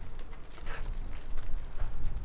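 Soft rustling and handling noises from a plastic-film-wrapped steel wheel being held and turned, with a few small crinkles, over a steady low workshop rumble.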